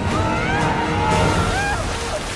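Film sound effects of a huge whirlpool: loud rushing water over a deep rumble, the hiss of the water growing brighter about a second in, mixed with dramatic music.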